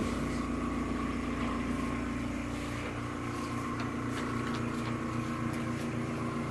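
Steady low machine hum made of several pitched tones, one of them pulsing slowly, with a few faint clicks over it.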